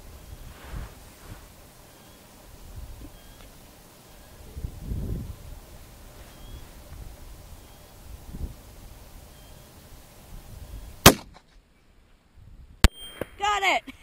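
A single rifle shot from a Howa 1500 in 6.5 Creedmoor fitted with a three-port muzzle brake: one sharp, loud crack about eleven seconds in, after a long quiet stretch. A second, shorter sharp crack follows just under two seconds later.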